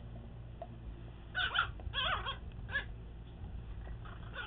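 A dog whimpering: three short, high, wavering whines in quick succession, starting about a second and a half in.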